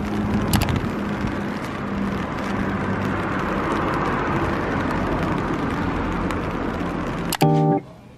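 Steady location ambience, an even noisy hubbub with a low steady hum and a couple of clicks about half a second in. It is cut off near the end by a brief snatch of music.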